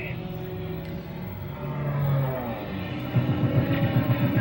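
A cartoon soundtrack playing through the loudspeaker of a 1954 RCA CT-100 color television: a low rumbling drone over a steady buzz, then rhythmic music starting about three seconds in.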